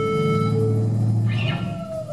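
Live rock band's final held chord of guitar and bass ringing out and dying away about three-quarters of the way through, then a short shout with a gliding pitch near the end.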